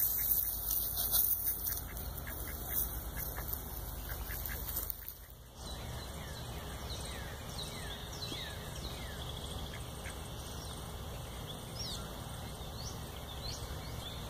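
Mallards quacking during the first few seconds. After a short break, many quick high bird chirps sound over a steady outdoor background.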